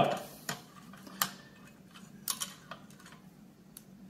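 Light, scattered clicks of a flat-blade screwdriver and a plastic retaining ring against the metal rim of a motorcycle's Monza-style gas cap as the ring is pried free and lifted out; about five small clicks, the loudest about a second in.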